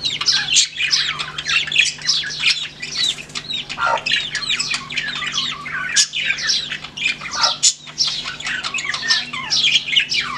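Newly hatched chicks peeping constantly, many short, falling cheeps overlapping one another, with a faint steady low hum underneath.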